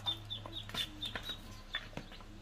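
Chickens: short high peeps repeating several times a second, with a few low clucks and some light clicks.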